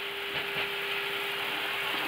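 Cockpit noise of an Airbus A321 slowing on the runway during its landing rollout: a steady rushing of airflow, engines and wheels, with a constant low hum running through it.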